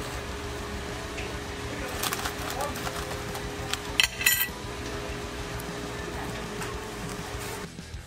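Restaurant table sounds: a few clinks and rustles of food being handled in paper-lined baskets, over a steady hum and faint background music and voices, with a louder cluster of clicks about halfway through.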